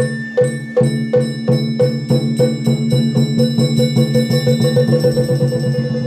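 Itako bayashi festival music played on a float: struck drum and metal percussion beating a pulse that quickens steadily, from about two strikes a second to four or five, under a held high flute note. The beat breaks off at the very end.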